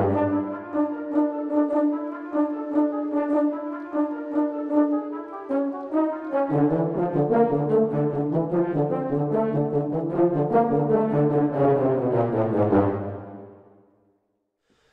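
Sampled orchestral brass from Spitfire Audio's Albion V Tundra library playing a test melody in rapid, fluttering short notes. High brass plays alone at first, low brass joins about six and a half seconds in, and the sound dies away in room ambience near the end.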